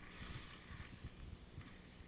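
Faint hiss of sliding over packed snow on a downhill run, strongest in the first second, with low wind rumble on the microphone.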